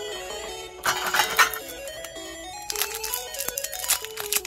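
Light background music with a stepping melody, over the crinkling of a foil Pokémon booster pack being handled and torn open, loudest about a second in and again near the end.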